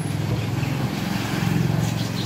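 A motor vehicle's engine running with a steady low hum, growing a little louder about a second and a half in.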